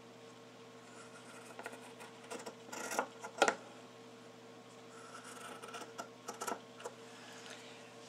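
Fabric shears snipping through the corner of a quilt's minky backing, a series of short crisp cuts as the blades close, the loudest about three and a half seconds in.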